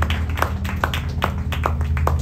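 Scattered applause from a small audience, sharp individual claps at about four or five a second, over a steady low hum from the stage amplification.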